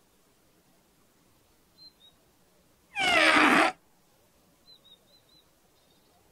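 A small toy trumpet blown once about three seconds in, giving a short, loud, strained note that slides down in pitch: the funny noise of a trumpet with a stone stuck inside it.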